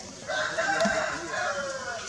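A rooster crowing once, a long call of about a second and a half that drops in pitch at the end.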